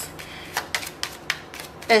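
A deck of oracle cards being shuffled by hand: a run of irregular light clicks and snaps as the cards slide and tap against each other. A voice starts at the very end.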